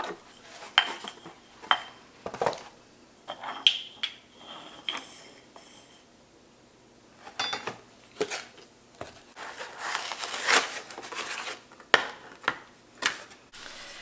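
Scissors and a paper package being handled, then glass tubes of vanilla beans set down on a wooden cutting board: scattered clicks and light clinks, some with a short high ring, and a stretch of paper rustling about ten seconds in.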